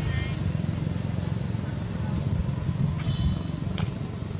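Steady low rumble of a motorbike or other motor vehicle running in the background, with a brief high-pitched squeak about three seconds in and a sharp click just before the end.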